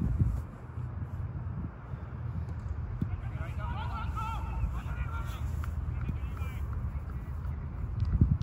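Wind buffeting the microphone in a steady low rumble, with faint distant voices calling across an open field from about three and a half to five and a half seconds in.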